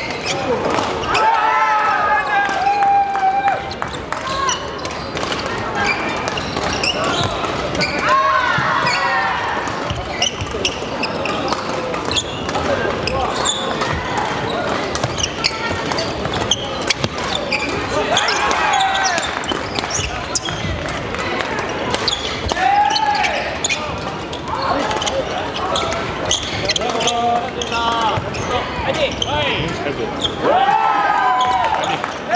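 Badminton play in a large sports hall: rackets strike shuttlecocks again and again with sharp clicks, from this court and neighbouring ones, mixed with players' voices and hall chatter that echo in the room.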